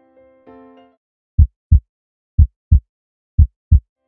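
Intro music: soft electric-piano notes that die away about a second in, followed by three loud heartbeat-like double thumps, low 'lub-dub' pairs about one per second.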